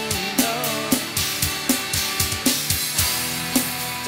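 Live rock band playing an instrumental passage: a drum kit keeps a steady beat with kick, snare and cymbals under strummed guitar chords, and a melody line with sliding, bent notes runs over the top.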